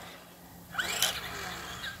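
Electric RC truck running on asphalt: a faint motor whine that rises about a second in, over tyre noise.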